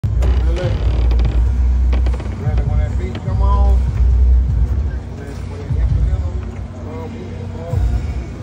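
Deep rumble in surges, heaviest in the first two seconds and again around the middle, with indistinct voices through it.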